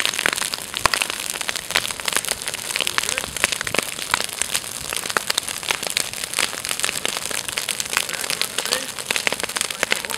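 Dry grass and brush burning, crackling with a dense, irregular run of sharp pops and snaps over a steady hiss.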